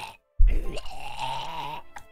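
A man's drawn-out groan, starting suddenly about half a second in and lasting over a second, as he mimics forcing something dry down his throat.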